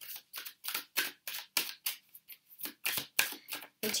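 A quick, fairly even run of light clicks or taps, about five a second.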